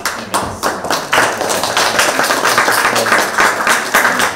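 A small group of people clapping: quick, overlapping claps that swell about a second in and keep going.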